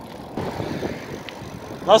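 Wind rushing over the microphone and tyre noise on asphalt as a bicycle rolls downhill; the rush picks up about half a second in and stays steady.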